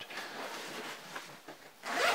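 Soft rustling of a fabric rifle bag being handled, fading about a second and a half in and picking up again just before the end.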